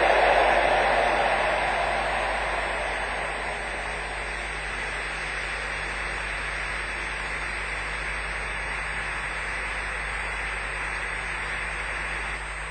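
Large congregation applauding, loudest at the start and settling within a few seconds into steady clapping.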